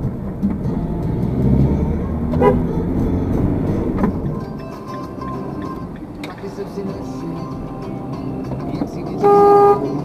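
A car horn sounds once, a steady blast of about half a second near the end, louder than anything else.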